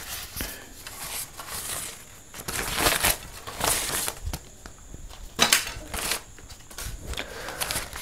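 Plastic gift wrapping and a packet crinkling and rustling as they are handled and pulled apart, in short irregular rustles, the loudest a few seconds in and again about five and a half seconds in.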